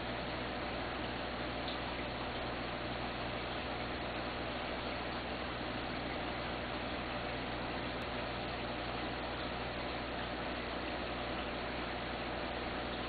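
Steady bubbling and trickling of air-driven sponge filters in an aquarium, their lift tubes streaming air bubbles, over a low steady hum.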